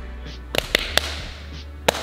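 Sharp taps of fists striking open palms during a game of rock paper scissors: three quick taps about half a second in, then one more near the end.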